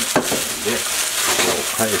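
Cooked rice and scrambled egg sizzling in a hot wok as a wooden spatula stirs and turns them over.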